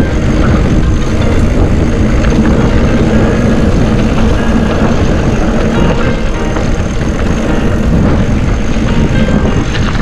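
Commencal Meta hardtail mountain bike rolling down a dry dirt trail: a steady rumble of tyres on the dirt and wind on the camera microphone.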